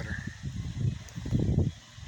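Wind buffeting the phone's microphone: a low rumbling, crackling noise that swells in two gusts and drops away just before the end.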